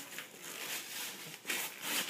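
Gift-wrapping paper being torn and crinkled by hand, in a few short rips, the strongest about one and a half seconds in.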